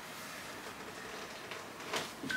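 Quiet room tone, a steady faint hiss, with light handling of a cotton garment and a couple of soft clicks near the end.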